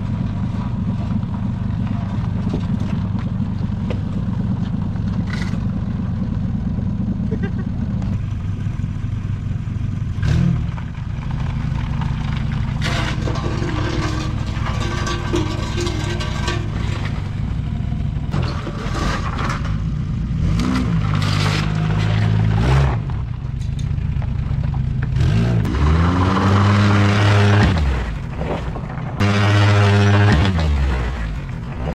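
A vehicle engine running steadily, then revving up and down several times, once about ten seconds in and in longer swells through the last ten seconds, with knocks in between.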